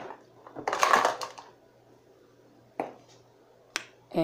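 Hands handling raw chicken drumsticks on a plate while seasoning them: a scratchy rubbing rustle about a second in, then two short clicks near the end.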